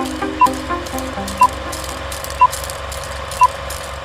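Intro jingle music fading out over a steady low drone, with four short high countdown beeps, one each second, like an old film-leader countdown.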